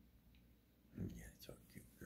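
A person whispering briefly, starting about a second in with a soft low bump.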